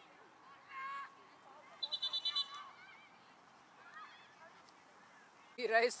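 A short, rapidly warbling blast of a referee's pea whistle about two seconds in, heard against faint shouting from the sideline. Loud shouting starts near the end.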